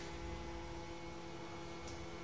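Steady electrical hum with a faint hiss: room tone.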